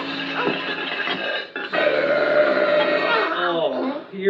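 A puppet wolf's long comic burp, voiced by a performer, about halfway through, held on one pitch and dropping away at its end, with background music under it.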